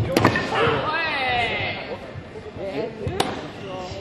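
Two quick slaps of foam sports-chanbara swords striking just after the start, followed by a long shout lasting over a second, and another sharp smack a little past three seconds in.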